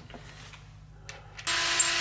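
Small cordless electric screwdriver motor running, a steady whir that starts suddenly about one and a half seconds in, after a quiet moment of handling.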